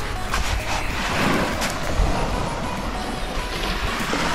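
Steady noise of surf and wind on the microphone, with faint music under it.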